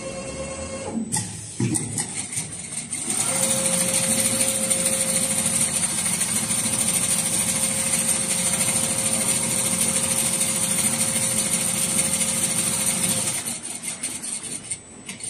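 Richpeace two-head perforation sewing machine running: after a couple of knocks, it starts about three seconds in and runs steadily with a constant hum for about ten seconds, then stops near the end.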